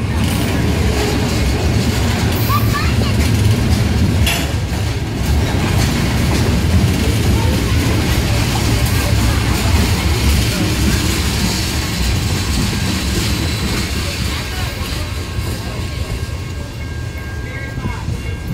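Freight train rolling past on the next track: a loud, steady rumble of steel wheels on the rails as the cars go by.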